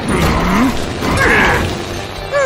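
Cartoon sound effects of two robotic crocodile vehicles tussling: mechanical clatter and whirring in two loud bursts, about a quarter second and a second and a quarter in, with a short rising whine in the first.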